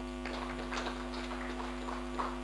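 Steady electrical mains hum in the sound system, with faint scattered ticks and rustles over it.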